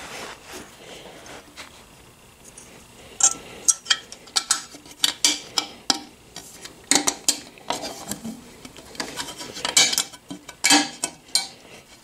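Metal-on-metal clinks and clicks as a metal skid plate and its brackets and spacers are worked onto a motorcycle's center stand tube and studs by hand. There is faint handling for the first few seconds, then a run of sharp clinks from about three seconds in.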